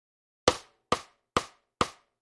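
Metronome count-in: four evenly spaced short, woodblock-like clicks, a little over two a second, counting in the playback of a guitar lick.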